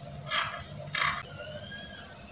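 Scissors snipping through adire silk fabric: two crisp cuts, the first just under half a second in and the second about half a second later.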